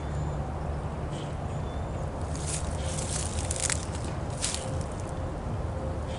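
Several brief crackles and rustles of dry leaves and twigs, bunched in the middle seconds, over a steady low rumble.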